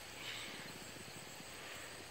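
Faint outdoor ambience with a steady high trill of crickets, and a soft brief noise about a quarter second in.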